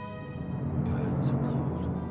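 Orchestral film score: held chords give way to a low rumbling swell that builds to a peak about a second in and then eases.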